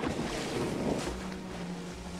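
Ocean surf washing on a shore, a steady rushing noise, with a faint low steady hum joining about a second in.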